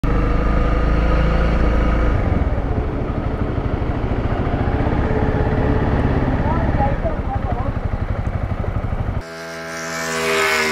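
Honda CRF300L's single-cylinder engine running as the dual-sport motorcycle rides slowly along a muddy road, with a rapid even pulse. The engine sound cuts off suddenly near the end.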